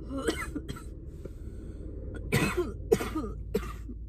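A woman coughing in several short bursts, with some throat clearing, after a harsh hit from a cannabis vape cartridge; the loudest cough comes about two and a half seconds in. A steady low hum runs underneath.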